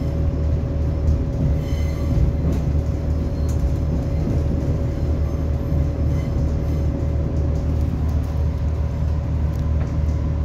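Interior noise of an Irish Rail 29000 class diesel multiple unit on the move: a steady low rumble of the train running along the track, with a steady hum running through it.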